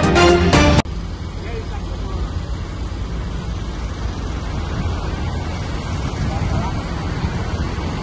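Upbeat electronic intro music that cuts off abruptly about a second in. It is followed by a steady low rumble of vehicles running outdoors, with faint voices near the end.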